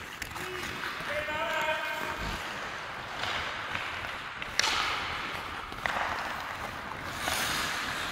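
Ice hockey play in an indoor rink: skates scraping the ice under a steady hiss, a player's distant call about a second in, and a sharp crack of a stick striking the puck about halfway through, with a fainter knock a second later.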